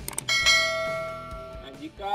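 Two quick clicks, then a single bell chime that rings out and fades over about a second and a half. This is the sound effect of a subscribe-button animation's notification bell being clicked.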